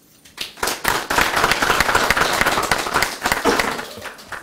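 Audience applauding. It builds about half a second in and begins to fade near the end.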